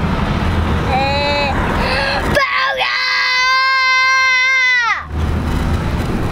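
A young child's voice whining on one short note, then wailing on a long, high, steady note for about two and a half seconds before breaking off, over the low rumble of the car on the road.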